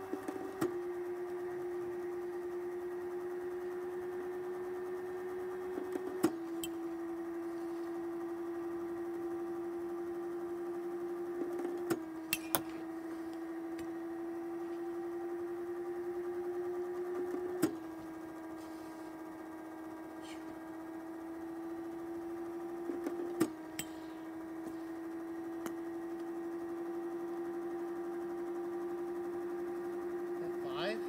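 Small electric pitching machine's motor humming steadily. Five times, about every six seconds, the hum dips in pitch with a sharp click as a ball is thrown, with a few other sharp knocks in between as balls are swung at with a metal bat.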